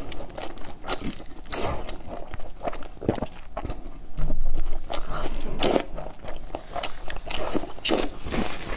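Close-miked biting and chewing of a braised meat roll: irregular clicks and crackles of the mouth working on the food, loudest about four to five seconds in.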